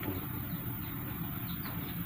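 Steady background hiss of rural ambience, with two faint short bird chirps about one and a half seconds in.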